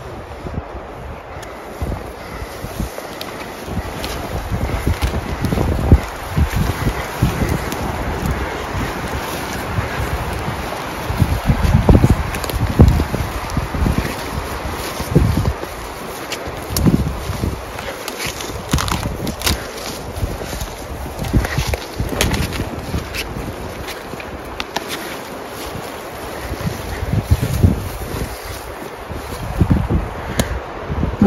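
Footsteps swishing through tall dry grass and brush, with clothing rustle and wind on the phone microphone; dull low thumps come irregularly throughout, and a few sharp clicks come in the second half.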